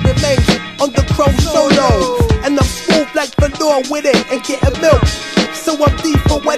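Hip hop music: rapping over a boom-bap beat with regular drum hits.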